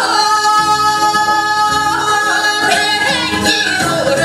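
A woman singing a Korean folk song (minyo) over a backing accompaniment, holding one long high note through the first half before moving on to shorter, ornamented notes.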